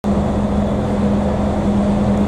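Diesel engine of an Avanza touring coach idling, a steady low hum with an even rumble beneath it.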